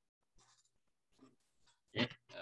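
Near silence on an online video call, with only faint traces of sound and one short, sharp sound right at the end.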